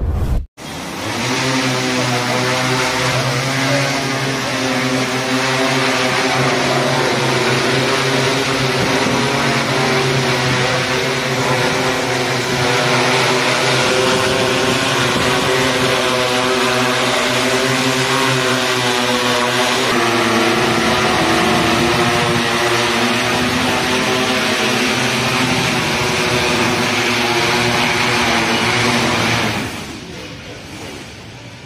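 Six-rotor agricultural spraying drone in flight, its motors and propellers giving a loud, steady buzz made of several tones together, which shift in pitch about two-thirds of the way through as the rotor speed changes. The sound drops away near the end.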